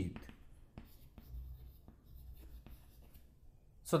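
Chalk writing on a chalkboard: faint, irregular taps and scratches as the letters are written.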